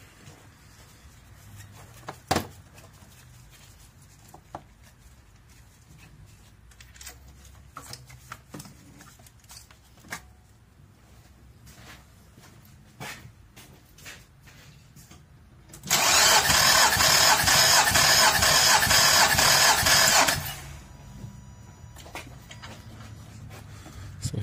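Scattered light clicks, then about sixteen seconds in the 2006 Nissan Altima's engine is cranked over by the starter for about four and a half seconds with even pulses and stops. It is a compression test on cylinder one, and the cranking sounds strong; that cylinder reads 160 psi, good compression.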